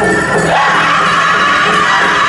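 Northern-style powwow drum group singing a chicken dance song in high, held voices over the drum, with the crowd audible behind.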